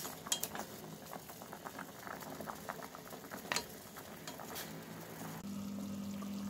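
Water at a rolling boil in a stainless steel pot of pork bones being blanched: irregular bubbling and popping. A little before the end it changes to a steady low hum.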